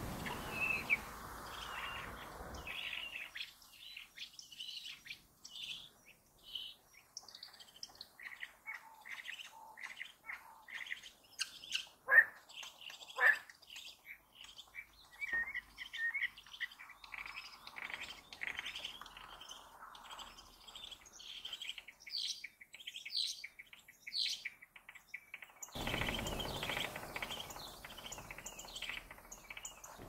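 Birds nesting under the roof tiles with their young, giving many quick high chirps and cheeps, with two louder falling calls a second apart near the middle.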